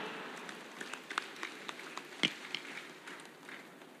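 Sparse, scattered handclaps from an audience at the close of a speech, irregular and thinning out in a reverberant hall, with one louder knock about two seconds in.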